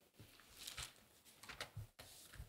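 Faint rustling and a few soft knocks of Bible pages being turned and handled at a lectern, close to its microphone, while the passage is looked up.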